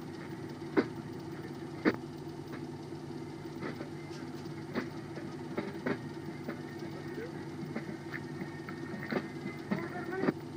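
A steady low mechanical hum with scattered sharp clicks and knocks. The clicks come about once a second at first, then more often and irregularly near the end.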